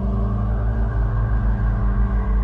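A low, steady rumbling drone of dark ambient music underscore, with no melody or beat.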